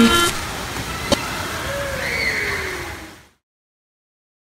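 Indoor pool splash-zone ambience: a steady rush of falling and splashing water, with a sharp click about a second in and a faint tone sliding down in pitch, all fading out a little after three seconds. The tail of a song cuts off just as it begins.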